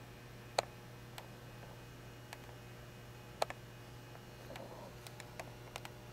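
Quiet room tone with a steady low hum and a few scattered sharp clicks, the two loudest about half a second and three and a half seconds in.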